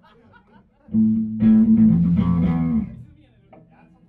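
Electric guitar and bass played through amplifiers: a low note comes in about a second in, a louder chord joins half a second later, and the notes ring for about a second and a half before being cut short near the three-second mark. Quiet chatter sits underneath.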